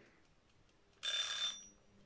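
Timer alarm going off about a second in: a short, high-pitched ringing tone with overtones, lasting well under a second, signalling that the timed wait is up.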